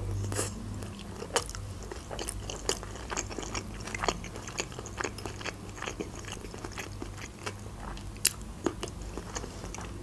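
Close-miked chewing of a spoonful of vinegret beet salad: many small wet mouth clicks and soft crunches, scattered irregularly. A faint steady low hum lies underneath.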